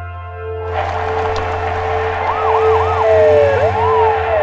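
Ambulance siren sounding, a few quick warbling yelps followed by a wail that rises and falls, over a rushing background noise that swells up about a second in.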